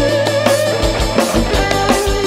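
A band playing a rock medley: an electric guitar holds a wavering lead line over bass and a steady drum beat.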